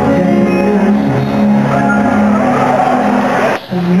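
Live arena concert music: a band playing with long held sung notes, recorded loud from the audience. Near the end the sound drops out briefly, then the music resumes.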